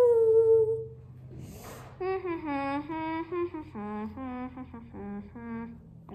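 A girl humming a short tune with her mouth closed while she works: one long held note at the start, a breath, then a string of short notes stepping up and down.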